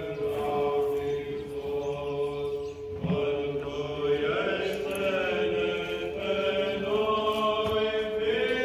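Orthodox liturgical chant: voices singing a slow melody over a steady held drone note.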